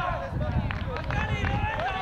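Several children's high voices shouting and calling out over one another during a youth football game, with a steady low rumble underneath.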